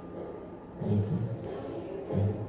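Soundtrack of a video artwork: a low rumble swells briefly about a second in, over a faint steady hum.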